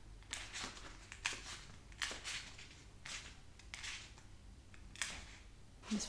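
Faint rustling of paperback book pages being leafed through, a series of soft paper flicks roughly once or twice a second.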